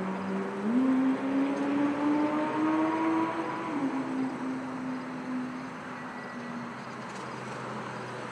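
A go-kart engine under throttle: its pitch steps up just under a second in and climbs steadily, then falls off about four seconds in and the engine fades away.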